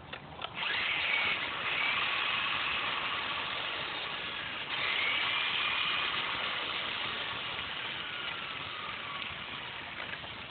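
Brushless electric motor of a Traxxas Stampede VXL RC truck whining with its wheels free while the truck lies on its side, starting about half a second in. The pitch rises a couple of times, surges again about five seconds in, then slowly falls toward the end.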